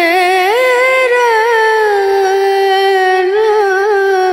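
Background music: a high voice sings one long, slowly gliding melodic line with vibrato, rising about half a second in, easing down and then holding a steady note.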